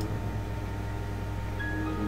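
A steady low electrical hum, and near the end a soft chime begins: the Windows XP log-off sound, marking the session starting to log off.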